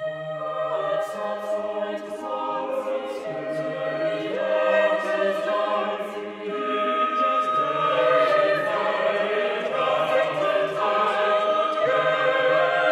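Choir singing a hymn in slow, held chords that change every second or two, growing louder after the middle.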